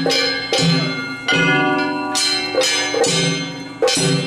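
Festival hayashi from a float: large brass hand gongs (kane) struck repeatedly in an uneven, fast rhythm, each stroke ringing on, with drum beats beneath.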